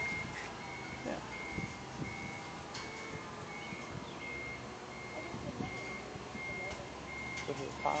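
A forklift's warning beeper sounding steadily, about three short high beeps every two seconds, over a low steady machine drone.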